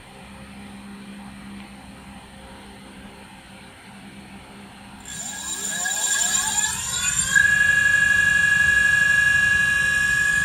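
Brushless electric scooter hub motor spinning up under throttle. About five seconds in, a rising whine of several tones climbs together, then levels out after a couple of seconds into a steady high-pitched whine as the unloaded motor reaches its top speed of about 40 mph.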